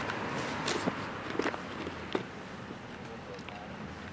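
Footsteps on pavement, several steps in the first two seconds, then a faint steady background hum.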